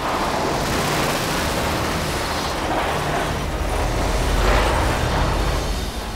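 Hurricane-force wind blowing hard and steadily, a dense rushing noise with a deep rumble underneath that swells about four and a half seconds in.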